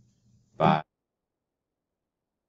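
Near silence except for one short, pitched vocal sound from a man, a brief syllable about half a second in.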